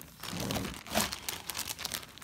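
Plastic zip-top bags crinkling as they and the fabric inside are handled, in irregular rustles that are loudest about a second in.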